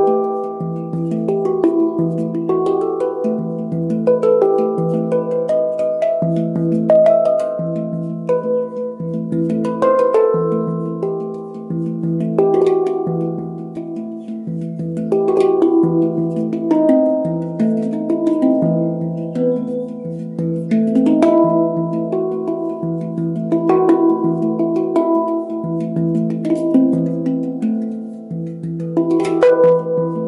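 Handpan tuned to a Romanian Hijaz scale, played with the fingers: a steady repeating pattern of low notes under an improvised melody of ringing steel notes.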